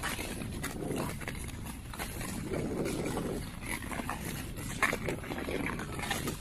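Nordic skates on bare lake ice: blades scraping in strokes about every second and a half, with sharp clicks of ski-pole tips striking the ice, the loudest a little before the end.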